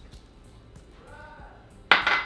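A sharp clink of kitchenware with a brief ring near the end, after a quiet stretch.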